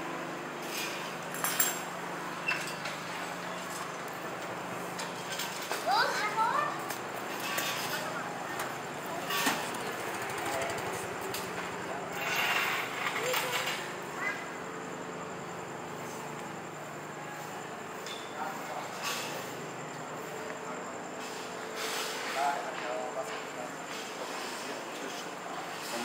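Night street ambience: scattered voices of people talking, a steady low hum, and occasional knocks and clatter.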